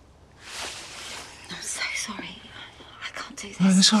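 Two people kissing: close breathy breathing with small lip smacks, then a voice starting to say "it's all right" near the end.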